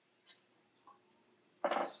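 Two faint, light clicks of tea tongs handling a small clay teacup in a quiet room, about a third and a half of the way in. A spoken word follows near the end.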